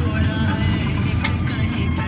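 Steady low rumble of a road vehicle in motion, heard from inside it.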